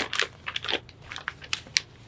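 Sheets of paper rustling and crinkling as they are lifted off a stack and handled, in irregular crackles that die away near the end.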